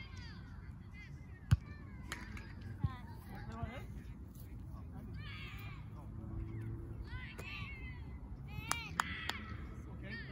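A volleyball being struck by players' hands and arms: a sharp smack about a second and a half in, a few lighter hits just after, and two more near the end. Voices call out across the field between the hits.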